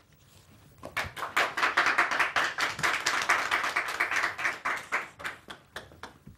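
People clapping, starting about a second in and dying away near the end.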